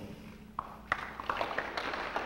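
Light, scattered applause from a small press-conference audience, a patter of claps starting about half a second in, right after the speaker finishes.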